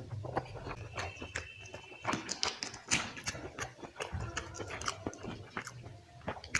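Close-miked chewing of chicken curry and rice, with many short wet mouth clicks from lips and tongue, and fingers squishing rice into gravy on a steel plate.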